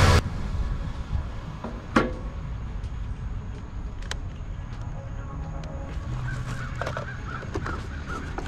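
Outdoor ambience with a low, steady wind rumble. Single sharp clicks come about two and four seconds in as an RC transmitter and truck are handled. Faint bird calls start near the end.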